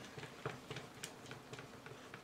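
Stirring stick clicking faintly and unevenly, several times a second, against the side of a cup while stirring a thick acrylic pouring paint mixture.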